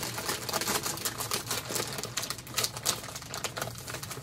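Plastic snack bag of puffcorn being pulled open, crinkling and crackling as the seal gives, with a few louder snaps near the end.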